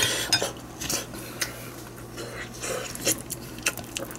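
Wooden spoon scraping and clicking against a glass bowl while stirring and scooping sticky, sauce-coated rice, a scattering of short knocks.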